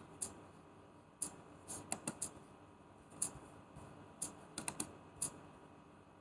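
Faint, irregular taps on computer keyboard keys: a dozen or so short clicks, singly and in small quick clusters.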